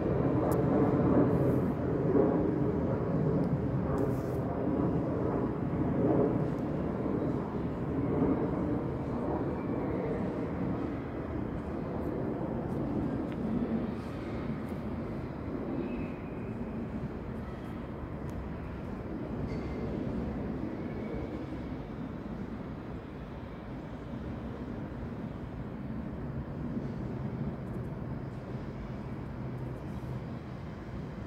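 Steady outdoor rumble of vehicle noise. It is loudest in the first ten seconds or so, then slowly fades.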